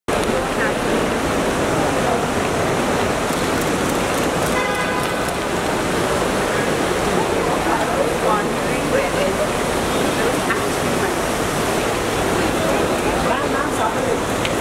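Busy crowd hubbub with indistinct voices over a steady rush of traffic-like noise, and a short horn-like tone about five seconds in.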